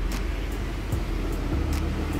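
Steady low background rumble with a few faint ticks.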